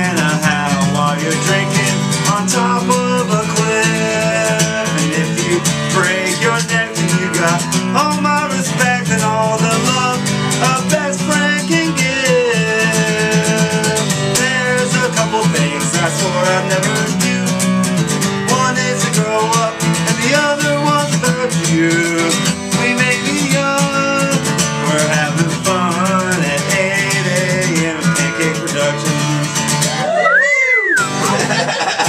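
Acoustic guitar strummed steadily, with a man's voice singing now and then over it.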